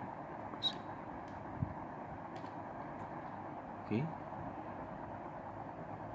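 A few faint, scattered clicks of a computer mouse as a page is scrolled, over a steady background hiss.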